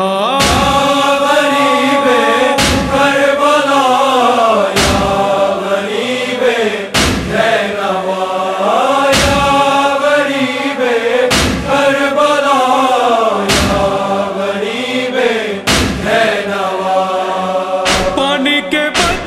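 Male vocals chanting a slow, drawn-out lament in the style of a Shia noha, with a deep thump marking the beat about every two seconds.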